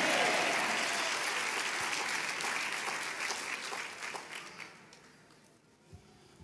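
A large congregation applauding, the clapping dying away steadily over about five seconds.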